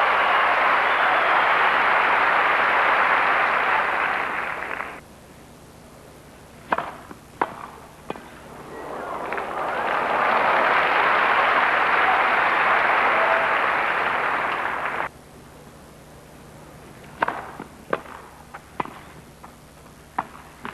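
Crowd applauding, stopping abruptly after about five seconds, then a few sharp strikes of racket on tennis ball in the quiet; the applause builds again and cuts off sharply, followed by another short run of ball strikes near the end.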